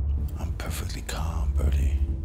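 A person whispering several short breathy phrases over a low, steady drone.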